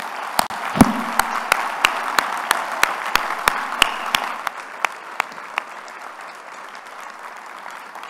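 Audience applauding, with one man's claps close to the podium microphone standing out as sharp slaps about three a second for the first four seconds. The applause thins toward the end.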